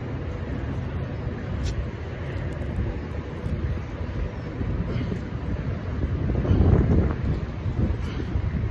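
Wind blowing across the microphone, a steady low rush that grows louder for a moment near the end.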